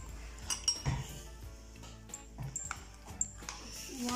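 A metal spoon clinking lightly against dishes several times, mostly in the first second, over faint background music.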